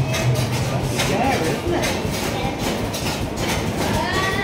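Earthquake simulator running: a steady low rumble with rattling, under faint voices.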